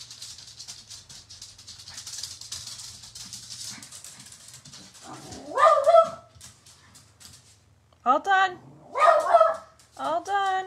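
Dog barking in loud, pitched yelps, about three times in the second half, agitated by horses being walked past on the road.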